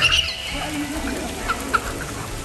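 Water jet bursting up from a mushroom-dome pool fountain and splashing down. Short high squeals of laughter come right at the start and twice near the end.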